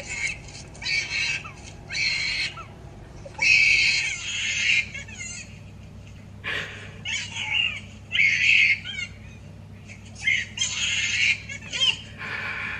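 A young girl screaming and crying, in repeated shrill, wavering bursts a second or so long.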